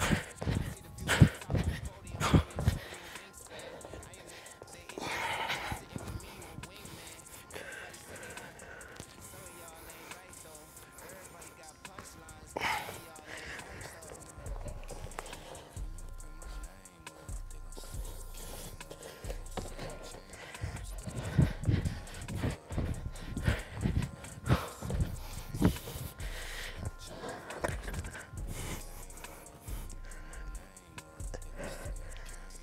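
Feet landing hard on an exercise mat in a quick run of thuds during squat jumps near the start, followed by hard breathing and exhales, then a second run of softer thuds later in bodyweight floor exercise. Quiet background music runs underneath.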